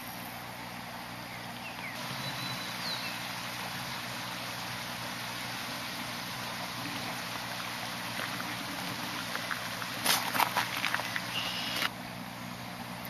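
Steady rush of shallow river water running over a rocky bed, with a low steady hum beneath it. A short run of clicks and scuffs comes about ten seconds in.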